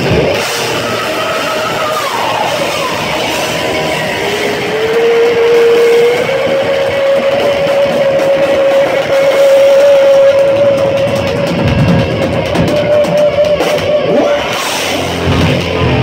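Loud live metal band playing: distorted electric guitar and drum kit, with one long held note that slides up a little about four seconds in and is held for about ten seconds, then heavy drum hits near the end.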